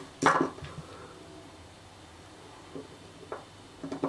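A sharp knock of small metal parts on a tabletop, then quiet, with a few faint handling clicks as the emptied laser module is picked up.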